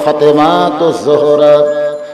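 A man's voice chanting in the melodic, sung style of a Bengali waz sermon, with long held notes and a downward glide about halfway through.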